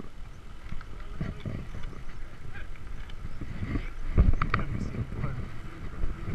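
Ride noise picked up by a chest-mounted GoPro on a mountain bike rolling over a concrete road: an uneven low rumble with scattered clicks and rattles from the bike, and a louder jolt about four seconds in.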